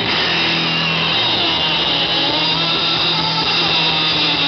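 Live rock band playing loudly, the distorted electric guitar holding a steady low droning note under a dense wash of noise, with no clear drumbeat.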